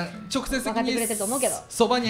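Speech: a woman talking, with a brief hiss about a second in.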